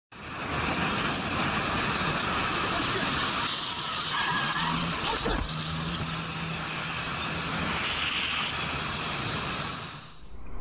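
Motorcycle riding at freeway speed: a dense rush of wind and road noise on the bike-mounted microphone, with a steady low hum through the middle few seconds and a single sharp knock about five seconds in.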